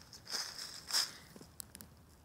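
Footsteps crunching and rustling through dry fallen leaves: two louder crunches, about a third of a second in and again about a second in, then a few faint clicks.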